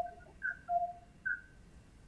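A voice coming over a video-call link breaks up into a few short, warbling, whistle-like tones, then cuts out about one and a half seconds in, leaving only a faint hiss. The call's audio connection is failing.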